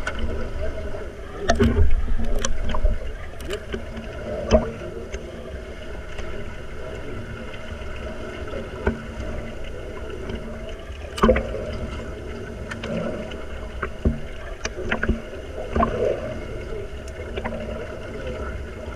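Muffled underwater sound from a camera submerged in a swimming pool during underwater rugby: a steady low rumble of moving water with scattered sharp clicks and knocks, loudest in the first couple of seconds, as finned players dive and struggle for the ball.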